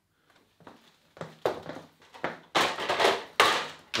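Plastic beverage crate full of glass bottles being carried and set onto the steel tubes of a wooden rack: a string of rattles and scrapes that grows louder and longer from about two and a half seconds in.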